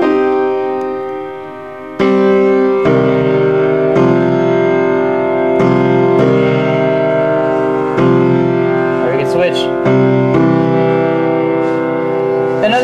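Piano chords played one after another, each struck and held for a second or two: suspended (sus4) triads resolving to major and minor triads.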